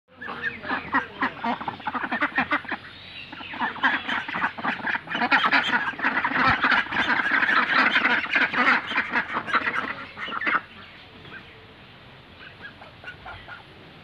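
A flock of Pekin ducks quacking, many short calls overlapping in a dense chorus that falls away to a few scattered quacks for the last few seconds.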